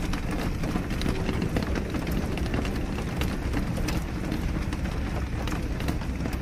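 Steady rain ambience on a city street: a constant wash of rainfall with a low rumble underneath and scattered ticks of individual drops.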